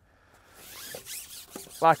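Long carbon fishing pole being shipped back with a hooked fish on, sliding and rubbing with a zip-like rasp that builds from about half a second in.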